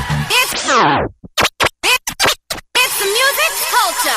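DJ mix break in electronic dance music: the track drops in pitch in a falling sweep like a turntable slowing to a stop, then cuts into a run of short chopped bursts with silence between them. A voice-like sample then plays over the music before the beat comes back in.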